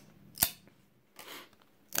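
Glossy trading cards being shuffled by hand: a sharp snap as one card flicks off the stack about half a second in, then a short swish of card sliding against card.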